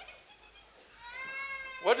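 A high-pitched, drawn-out vocal cry from a person, rising slightly and then held for about a second, starting just under a second in. Speech begins right at the end.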